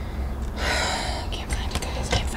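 A woman's sharp breath, a gasp or sigh lasting under a second, followed by a few light clicks of small objects being handled.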